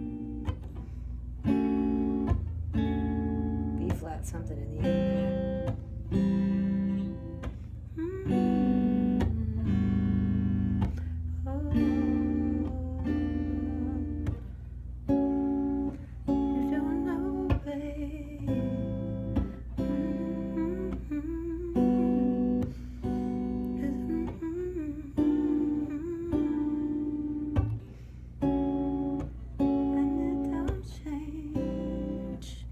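Stratocaster-style electric guitar playing a slow progression of major-seventh and minor-seventh chords (D major 7, A minor 7, G major 7, B-flat), the four highest strings strummed and plucked, a new chord every second or two, each left ringing. A soft voice sings along in places over the guitar.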